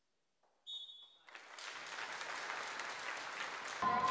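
A referee's whistle gives one short, steady blast about half a second in, signalling the serve. A crowd in a sports hall then swells into steady applause and noise.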